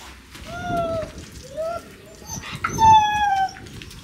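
Siberian husky whining: two short high whines in the first two seconds, then a longer, louder whine about three seconds in.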